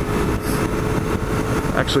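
BMW R1100RT boxer-twin motorcycle engine running on the move, heard from the rider's microphone as a steady rumble with a thin steady hum over it.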